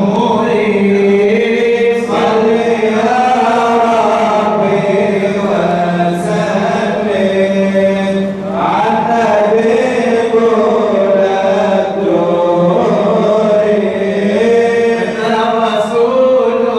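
Unaccompanied male chanting of madih nabawi, praise poetry for the Prophet, sung into a microphone. A melismatic melody glides over a steady low note held underneath.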